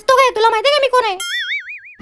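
A high-pitched, cartoon-like voice effect for about a second, then an edited-in comic 'boing' sound effect: a lone tone wobbling up and down several times until the end.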